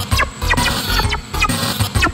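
Heavily distorted electronic music: a circuit-bent Alesis SR-16 drum machine's steady pulsing beat under a buzzing Dave Smith Evolver synth line of short rising and falling blips, its tone shifting as the Evolver's knobs are turned.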